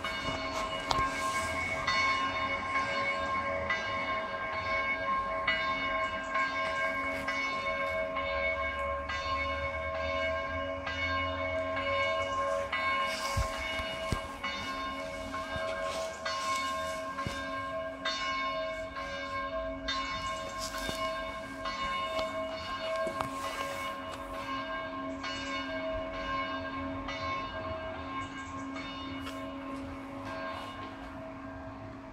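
Church bells ringing in a continuous peal, several bell tones sounding together and hanging on, with fresh strikes about once a second.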